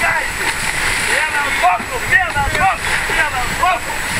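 Several voices shouting across the water from nearby yachts, in short high-pitched calls from about a second and a half in. Under them runs a steady rush of wind and water along the hull of a sailing yacht under way.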